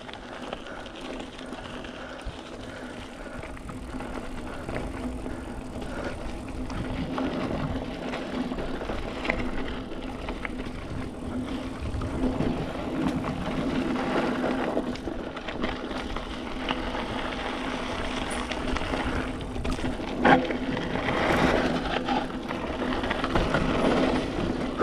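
Mountain bike rolling on a dirt singletrack: steady tyre and drivetrain noise that grows louder as the ride goes on, with a sharp knock about twenty seconds in and more clatter near the end.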